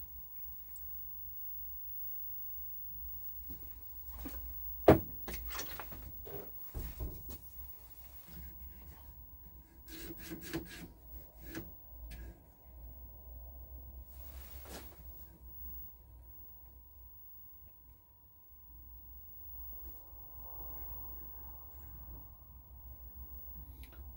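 Scattered clicks and knocks from a hand working the front-panel controls of a Philips colour television, with one sharp click about five seconds in and a cluster of clicks around ten to twelve seconds. A faint steady tone and a low hum run underneath.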